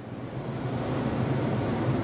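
A long breath close to a clip-on microphone, a rushing sound that grows steadily louder over about two seconds.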